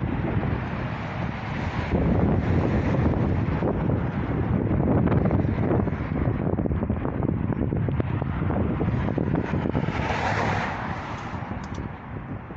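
Wind buffeting the phone's microphone: a rough, uneven low rumble with hiss. About ten seconds in, the hiss briefly rises.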